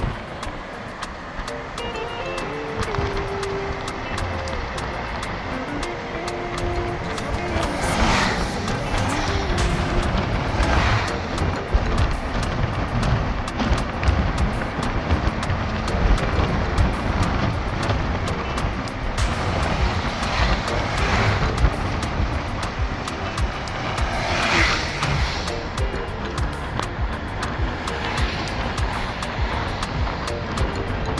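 Steady road and wind noise from a car driving along a paved road, heard through an open window, with several brief louder whooshes. Music plays underneath.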